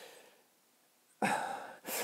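A man's audible breath in, lasting about half a second, a little past halfway through, after a short near-silence.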